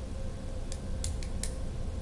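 Room tone: a steady low hum with a faint steady tone in it, and a few short, sharp clicks around the middle.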